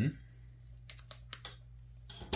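Handling of stiff cardboard 3D-puzzle sheets: a few light, sharp clicks and ticks about a second in.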